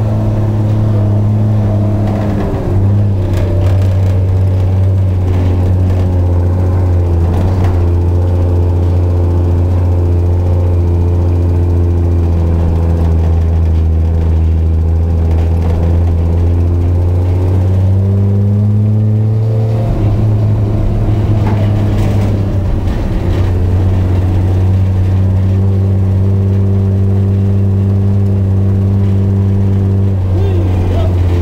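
Humber Pig's Rolls-Royce B60 straight-six petrol engine running on a test run. Its speed changes a few times: it drops a few seconds in, rises shortly before two-thirds of the way through and falls back just after, then runs steadily.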